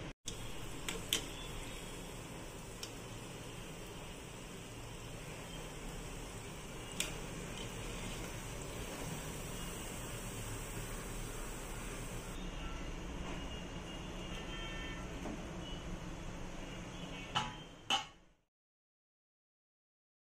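Gulab jamun deep-frying in hot oil on a low flame: a steady, gentle sizzle with a few light clicks, which cuts off abruptly near the end.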